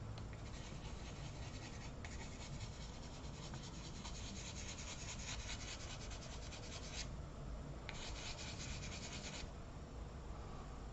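Pastel pencil rubbing across paper in rapid repeated strokes, a faint scratchy hiss. It runs for about seven seconds, stops briefly, then resumes for a second and a half near the end.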